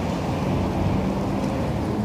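Steady low rumble of outdoor background noise with a faint low hum underneath.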